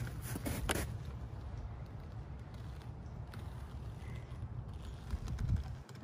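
Wind buffeting the microphone as a steady low rumble, with a few sharp handling clicks in the first second and some dull knocks near the end as the wooden hive is being opened.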